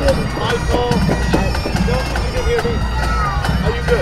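Bagpipes playing: a steady drone with a melody of held notes over it, and voices in the background.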